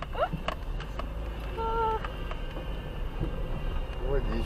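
Car cabin at crawling speed on a rough dirt road: a steady low rumble of engine and tyres, with a few light knocks and rattles as the car bumps along. A short steady tone sounds a little before the halfway point.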